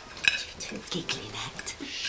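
Scattered light clinks and clatter of cutlery and crockery, with a faint low murmur of voices.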